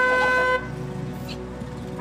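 Car horn sounding one steady note that cuts off about half a second in.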